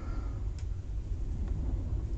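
Low steady background rumble, with a couple of faint light clicks.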